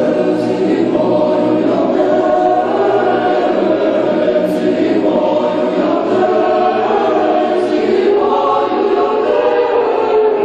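Boys' choir with older youths' lower voices singing a sacred choral piece without instruments, holding long sustained chords throughout.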